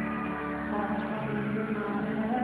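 Live slow pop ballad playing through an arena's sound system, heard from the crowd: sustained accompaniment between sung lines, with a low held note coming in about a second in.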